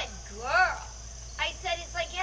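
Juvenile bald eagle calling: a short falling squeal at the start, one whine that rises and falls about half a second in, then a run of quick chirps near the end.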